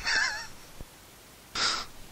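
A short wavering squeak at the start as a spit-wetted rubber O-ring is pushed into the plastic central vac handle. A faint click follows, then a brief hiss of rubbing near the end.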